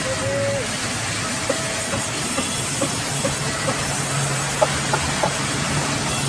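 Band sawmill running, its vertical blade cutting lengthwise through a log: a steady rushing noise with scattered short clicks, a low hum coming in about four seconds in and one sharper knock shortly after.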